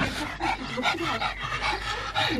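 A pug panting quickly and evenly after running about.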